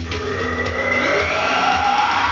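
A man's wordless sung note into a handheld microphone, sliding steadily upward in pitch and growing louder, over a guitar rock backing track.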